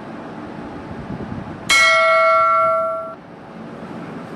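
A single bell-like chime sound effect, the notification-bell ding of a subscribe-button animation. It strikes just under two seconds in and rings out for over a second, over a low steady hiss.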